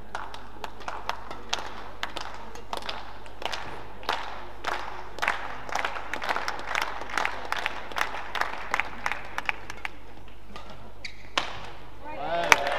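Badminton rackets striking a shuttlecock again and again in an echoing sports hall: a string of short, sharp hits at irregular intervals, coming thicker and louder about halfway through.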